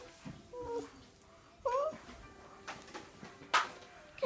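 A young child making short wordless whining cries that slide up and down in pitch, twice, with a sharp click about three and a half seconds in.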